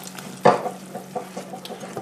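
Wooden spoon stirring hot fudge syrup in a metal saucepan, with a faint sizzle from vanilla splashed into the near-boiling sugar mixture. One knock about half a second in.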